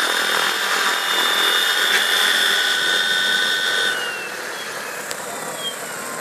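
Radio-controlled helicopter's motor and rotors running with a high, steady whine; about four seconds in it gets quieter and the pitch falls as the throttle comes back.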